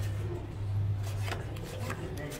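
Playing cards being dealt from a blackjack shoe and slid across the felt table, with a couple of short, sharp swishes late on, over a steady low hum.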